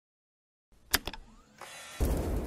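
Sound effects for an animated logo intro: silence, then two sharp hits about a second in, followed by a steady whooshing swell that leads into the intro music.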